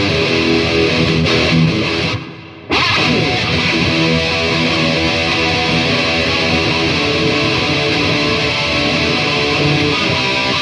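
Electric guitar, an ML-shaped solid body, played through an amplifier with a full, loud tone and continuous picking. The sound cuts out abruptly a little over two seconds in, for about half a second, then the playing picks straight back up.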